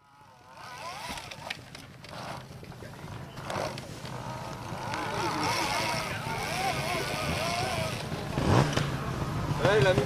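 Spectators' voices on an electric trial motorcycle's ride through a rocky section. The bike's electric motor gives a quiet whine, with one quick rising whine about eight and a half seconds in as the rider gives it power.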